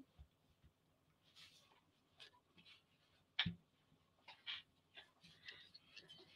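Near silence: room tone with a few faint knocks and rustles, one sharper knock about three and a half seconds in.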